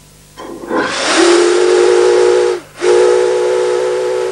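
Brass steam whistle on the funnel of the small steamship SS James Goodwin blowing two blasts of about a second and a half each, with a brief break between. It opens with a rush of steam hiss before the tone sounds, and each blast holds several pitches at once.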